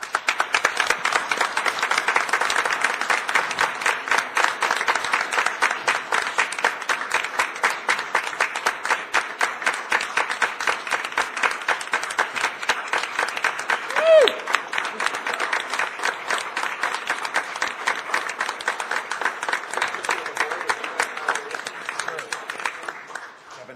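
Audience applauding steadily, thinning out near the end, with one short falling whoop rising above the clapping about two-thirds of the way through.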